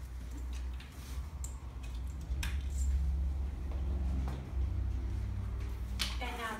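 A few light clicks and knocks from hands working a Bugaboo Cameleon3 stroller's front swivel wheels and wheel lock, the sharpest about two and a half seconds in, over a steady low rumble.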